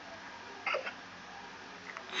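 A short stifled laugh from a person: one quick breathy burst about two-thirds of a second in, with faint hiss around it.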